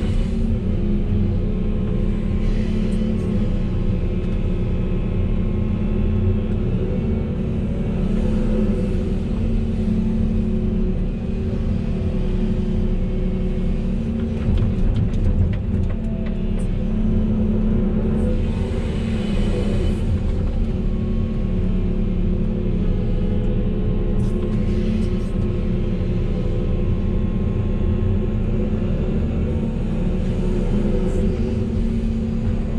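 Volvo EC380E excavator's six-cylinder diesel engine and hydraulics running steadily under load through digging and loading cycles, heard from inside the cab as a constant low drone.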